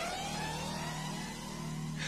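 A quiet break in a hip-hop backing track: a held low note under faint sweeping tones that rise and then fall in pitch.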